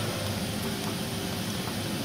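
Steady background noise between remarks: an even hiss with a faint low hum, with no distinct events.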